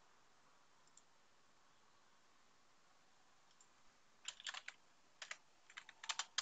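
Computer keyboard being typed on: a few quick key clicks in short runs, starting about two-thirds of the way in, over faint hiss.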